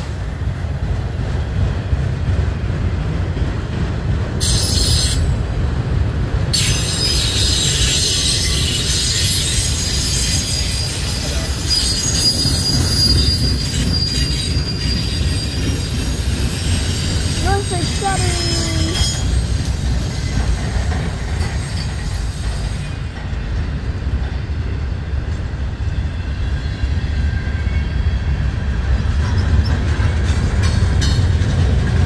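Freight train's autoracks and boxcars rolling past at close range: a steady low rumble of steel wheels on rail, with a high-pitched wheel squeal from about four seconds in until about twenty-three seconds in.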